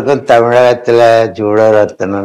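A man's voice speaking in long, held syllables at a steady pitch, each broken off after about half a second.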